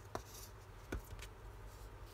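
Faint handling of paper on a cutting mat: two light ticks about a second apart, the first followed by a short papery rustle.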